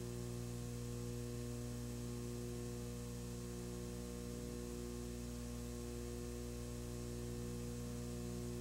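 Steady electrical hum with a faint hiss, unchanging throughout.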